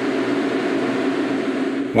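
Steady industrial machinery noise from an LNG ship's cargo-transfer deck: an even hiss with a faint low hum, which cuts off suddenly near the end.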